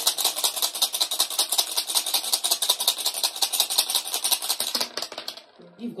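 Wooden rune stones being shaken together, a fast, even rattle of small clicks that stops a little over five seconds in as the runes are cast.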